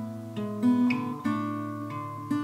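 Acoustic guitar playing folk-song chords in a short instrumental gap between sung lines, with a few fresh strokes about half a second apart.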